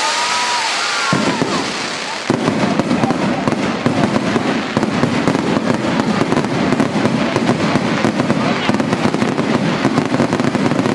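Fireworks display: a steady hiss of sparks with a couple of whistles gliding in pitch at the start, then from about two seconds in a dense, continuous barrage of rapid bangs and crackling.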